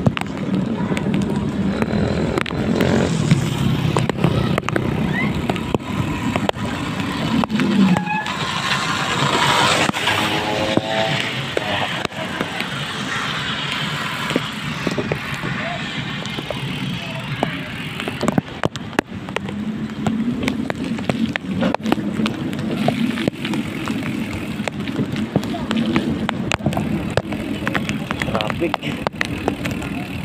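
Road and wind noise from a vehicle driving through shallow floodwater in the rain, tyres hissing on the wet road, with many sharp clicks. A voice or music is faintly heard about eight to eleven seconds in.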